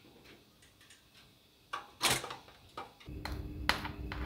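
Faint clicks from a pop-up toaster, then a sharp clack about two seconds in. Near the end, a table knife scrapes cream cheese across a toasted bagel in short strokes over a steady low hum.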